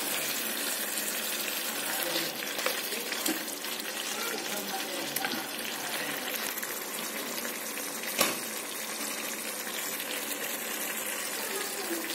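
Chicken chaap cooking in ghee in a kadai on low flame, a steady frying sizzle; the ghee has separated and risen to the top, a sign that the meat is cooked through. A single sharp tap about eight seconds in.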